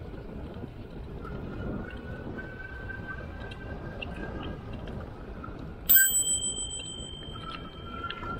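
A bicycle bell rung once about six seconds in: a sharp ding with a bright ring that dies away over about a second. It is the e-bike rider's warning to walkers on the trail ahead, heard over the steady rush of riding.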